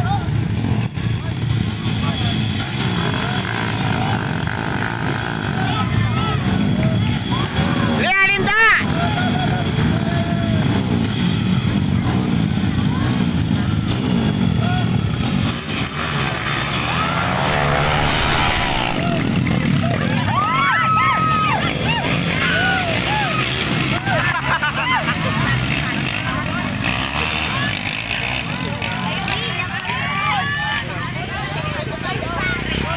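Several dirt bike engines idling and revving at a start line, then pulling away, under a crowd of spectators talking and shouting.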